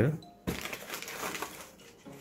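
Plastic packaging crinkling and rustling as a bottle in an inflatable air-column wrap is handled and lifted out of a cardboard box, starting suddenly about half a second in.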